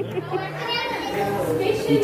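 Speech only: several people talking over one another amid the chatter of a busy room.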